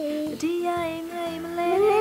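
A small child singing into a microphone in long held notes, the pitch rising near the end.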